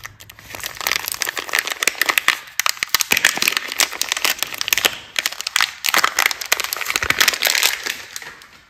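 A soap bar's glossy printed wrapper crinkling densely as hands peel it open and pull it off the bar.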